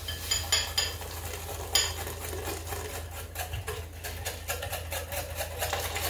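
A wire whisk beating egg yolks and sugar in a glass bowl: a fast, steady run of light clinks as the wires strike the glass, with a few sharper clinks in the first two seconds.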